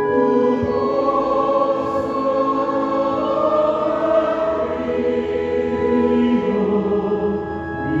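An organ playing a hymn slowly in sustained, held chords. A phrase closes just before the end and a new chord begins.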